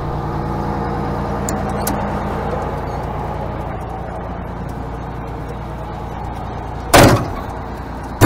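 The Detroit Diesel 6V92 two-stroke V6 diesel of a 1955 Crown Firecoach fire engine idling steadily, then a cab door slams shut about seven seconds in.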